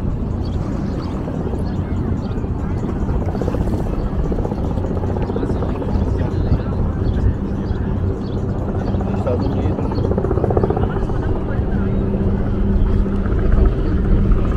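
A steady engine drone, growing somewhat louder in the second half, over a low outdoor rumble and the voices of people nearby.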